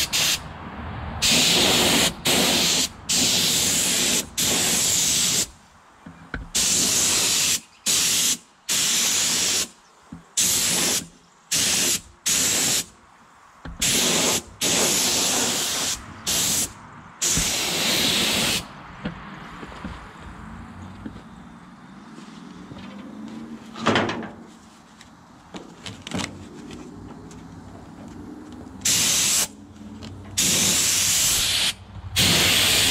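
Primer being sprayed onto a truck body in repeated bursts of hiss, each starting and stopping sharply with a trigger pull, many short and some a second or two long. The spraying pauses for about ten seconds in the middle, with a single click in the pause, and starts again near the end.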